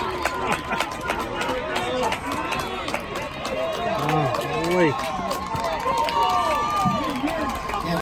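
Baseball spectators in the stands, many voices talking and calling out over one another, with a thin steady high tone underneath.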